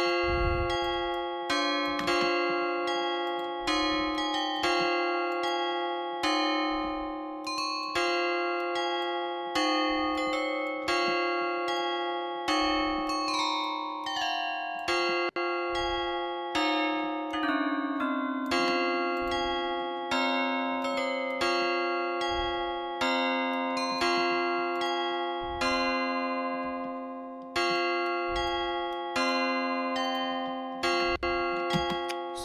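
Omnisphere software synth playing a looping chord progression in F minor with a bell-like tone. The chords are struck in a steady pulse and each rings and dies away. The voicing changes partway through as notes are moved while it loops.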